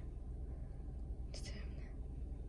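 Steady low rumble inside a car cabin, with a brief whisper about one and a half seconds in.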